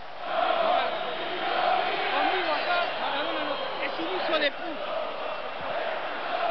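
Large football crowd chanting and shouting together in the stands, a continuous dense roar of many voices.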